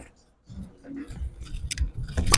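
Bowling alley background noise: a low rumble with small scattered clicks and rattles, starting about half a second in after a brief hush.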